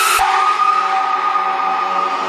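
Electronic dance music breakdown: the drums and full-range sound cut out just after the start, leaving a held synthesizer chord with no beat.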